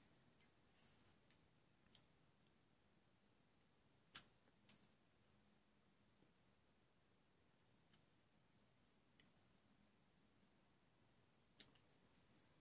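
Near silence with a few faint, short clicks; the loudest is about four seconds in, and another comes near the end.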